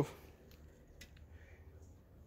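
Near silence: a faint low background hum with two light clicks, about half a second and a second in.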